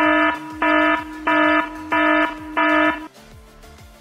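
Electronic alarm-style warning beeps: five harsh, buzzing beeps about two-thirds of a second apart over a steady low tone, stopping abruptly about three seconds in, after which only a faint low hum remains.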